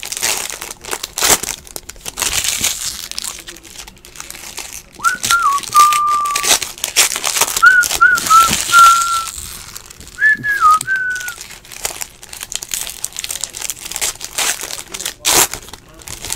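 Foil wrapper of a baseball card pack crinkling and tearing as it is opened and the cards are pulled out. Partway through, someone whistles three short phrases of a tune.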